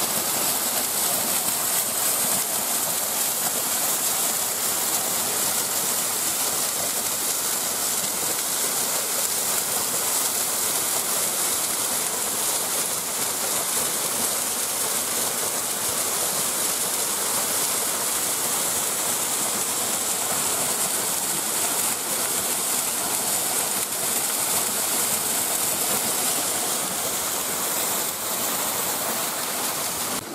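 Stream water cascading and splashing over rocks: a steady rushing sound with no break.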